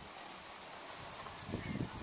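Quiet outdoor background: a faint steady hiss, with a few soft low knocks near the end.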